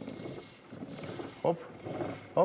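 Differential ring gear spinning slowly through gear oil as the wheel is turned by hand: a faint, even rushing.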